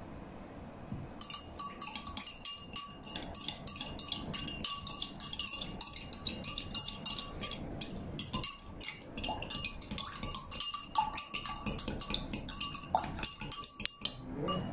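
Metal spoon stirring coffee powder into water in a glass tumbler, rapidly and continuously clinking against the glass, which rings; it starts about a second in.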